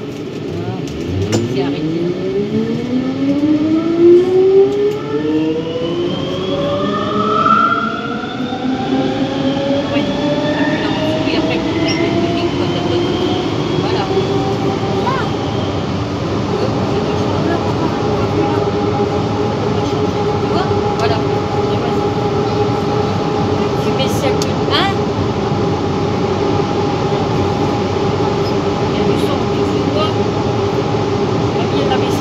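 Siemens/Matra VAL 208 PG rubber-tyred automatic metro pulling away: the traction drive's whine rises in pitch through several tones over about ten seconds as the train accelerates, then holds steady at running speed over a rolling rumble.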